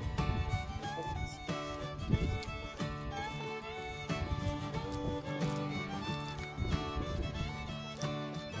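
Background music: an instrumental tune with held notes and a few sliding pitches.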